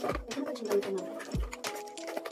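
Background music with held notes that change in steps and occasional deep bass thumps.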